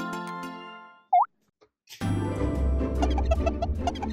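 Background music fades out over the first second. Just after, a short, loud sound effect glides up in pitch, and then there is a brief silence. About halfway through, new children's music starts, with a bass line and quick repeated notes.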